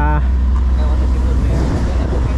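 Fishing boat's engine running steadily under way, a deep, even low drone.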